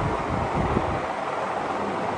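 Steady background room noise, with soft irregular low thuds and rumbles.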